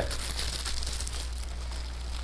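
Cellophane gift wrapping crinkling faintly as the wrapped package is handled and lifted, over a steady low electrical hum.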